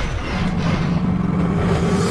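Low, steady rumble from the cartoon's soundtrack, with a held low hum that comes in about a third of a second in.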